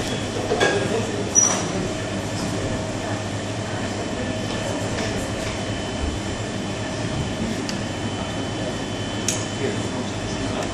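A steady background hum and noise, with a few light, sharp clinks of metal spoons against glass sundae bowls, one with a brief high ring.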